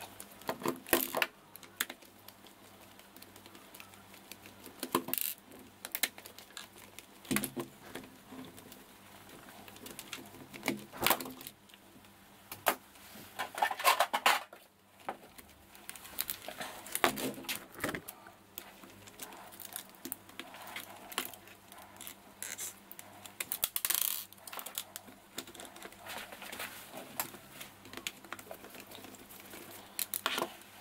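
Scattered clicks, taps and short rattles of small plastic and metal parts being handled as the front end of a Tamiya TT-01 radio-control car chassis is taken apart by hand. The busiest stretches are in the middle and about three-quarters of the way through.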